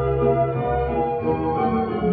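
A 1939 Imperial shellac 78 of a German dance orchestra playing on a gramophone: the instrumental introduction, with held, sustained chords. It sounds muffled and has little treble, as an old record does.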